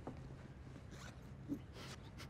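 Handbag being unzipped and rummaged through: a faint zip and a few soft rustles about a second in and near the end.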